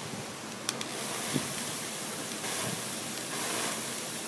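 Water spraying onto a torch-heated painted metal panel: a steady hiss, with louder stretches of spray about two and a half and three and a half seconds in.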